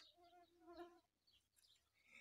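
Near silence outdoors, with a faint, short bird call in the first second.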